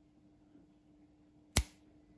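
A single sharp click from the rotary switch of an old electric hot plate as its knob is turned on to setting 2, about one and a half seconds in.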